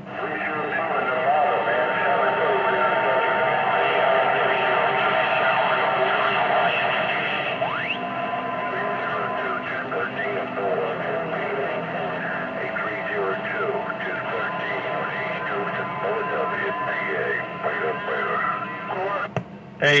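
Stryker SR-955HP CB radio on channel 19 receiving long-distance skip: faint, garbled voices buried in steady static, with a constant whistle and a single rising whistle about eight seconds in.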